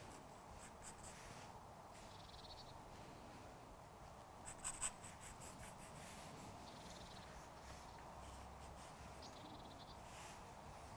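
Faint pencil strokes on drawing paper: a few short scratches, with a slightly louder cluster about halfway through.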